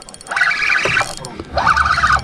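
Spinning reel's drag buzzing out in two short bursts as a hooked striped bass takes line on light tackle. A low rumble comes in about halfway through.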